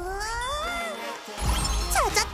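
A high, cartoonish voice holding one long cry that rises in pitch, then upbeat background music with a heavy bass comes in a little over halfway through.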